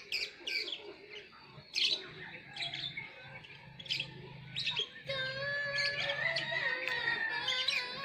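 Small birds chirping in short, scattered calls. In the second half a distant voice holds a long, steady sung note.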